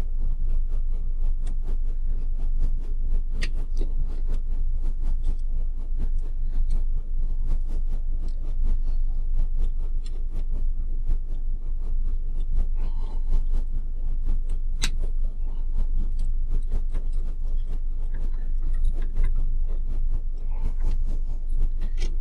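Steady low hum with light metallic ticks and scrapes of a hex key working the bolts that hold a 3D printer's extruder assembly to its carriage, and two sharper clicks, about three and fifteen seconds in.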